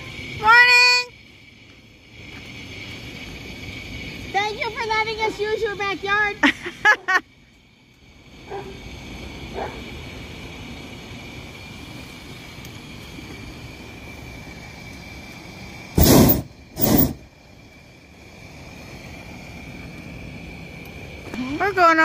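Two short, loud blasts from a hot air balloon's propane burner, one right after the other, as the balloon climbs. A steady faint hiss and some talk sit underneath.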